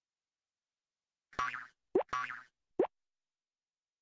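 Cartoon-style sound effects from an animated film-studio logo. Twice, about a second apart, a short buzzy pitched sound is followed by a quick upward pitch glide.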